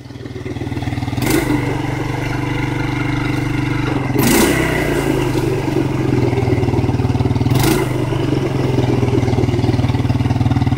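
Suzuki Eiger ATV engine running under throttle while the quad sits stuck in deep mud, swelling over the first second and then holding steady, with three short bursts of noise, about a second in, around four seconds and near eight seconds.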